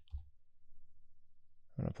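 A computer keyboard keystroke clicks just after the start, closing a short run of typing, followed by a quiet stretch until a man starts speaking near the end.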